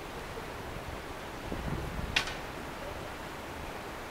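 Steady outdoor background hiss with a faint low rumble, and one sharp click about two seconds in.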